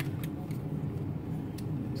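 A few light clicks of a blue plastic hard-drive caddy being handled with the drive clipped into it, over a steady low hum.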